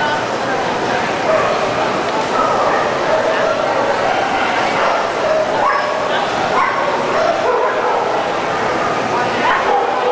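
Dogs barking over steady crowd chatter.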